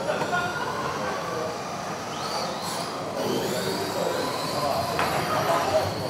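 Electric 2WD RC cars running on the indoor track: a high motor whine that rises in pitch as a car accelerates, over steady running noise, with a sharp click about five seconds in.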